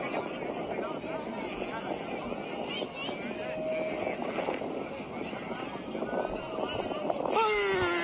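Scattered voices of players on a soccer field over a steady rushing background noise, then near the end a loud, falling shout as a goal is celebrated.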